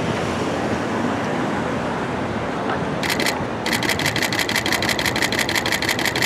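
Steady street and traffic noise. About three seconds in, a fast, even run of mechanical clicks starts, typical of a camera shutter firing in burst mode, with one brief break.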